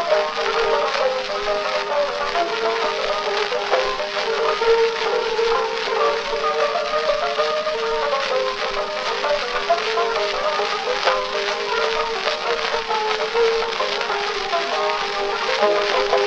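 Early acoustic recording from 1898 of a banjo duet playing a brisk march. The sound is thin, with almost no bass, overlaid with steady surface hiss and crackle.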